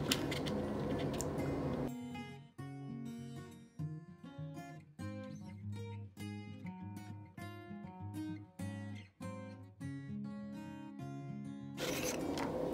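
Instrumental background music led by plucked acoustic guitar, coming in about two seconds in after a short stretch of soft noise.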